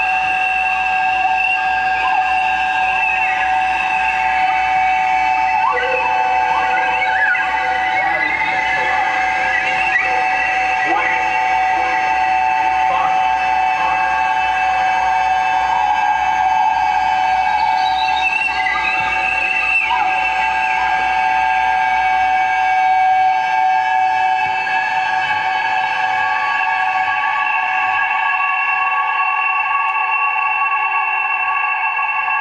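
Live electronic noise music: several sustained, high, feedback-like tones held steady, with short sliding and warbling pitches crossing them through the middle. A low hum underneath drops out about two-thirds of the way through.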